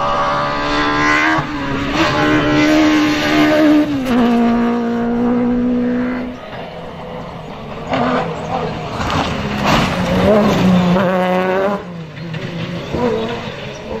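Rally buggies' engines at high revs on a dirt stage, heard across several cuts. The first car holds a high, steady note that drops to a lower pitch about four seconds in, then fades. A second car revs up with rising pitch between about eight and twelve seconds in.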